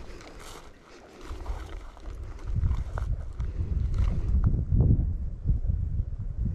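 Wind buffeting the microphone: a low, gusting rumble that sets in about a second in and grows stronger, with a few faint clicks before it.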